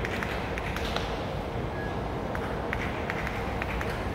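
Baseball stadium crowd ambience: a steady wash of crowd noise with scattered short, sharp taps and claps.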